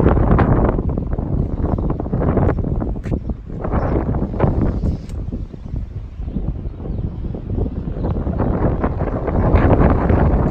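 Wind buffeting the microphone: a gusty low rumble that rises and falls in loudness.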